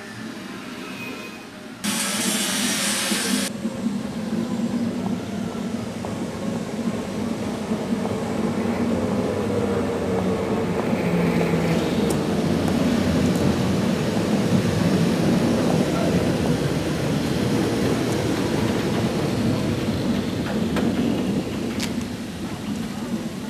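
Vintage electric tram approaching along the track: a steady rumble of wheels and motor that grows louder as it nears. A short burst of hiss comes about two seconds in.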